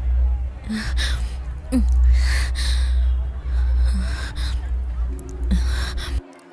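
A person's breathy gasps, a string of short sharp breaths one after another, over a steady low rumble.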